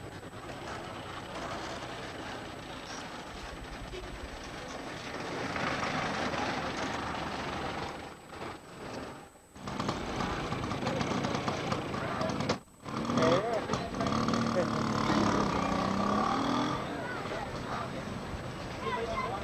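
Outdoor crowd and street noise with people talking indistinctly in the background. The sound drops out briefly twice, around eight to nine and a half seconds and again near twelve and a half seconds, and is fuller and louder after that.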